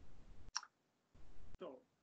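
A faint short click through a video-call microphone, with low background hiss cutting in and out between pauses, then a man softly saying "So" near the end.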